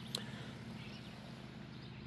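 Quiet outdoor background in a garden patch: a faint steady low hum and a single soft click just after the start.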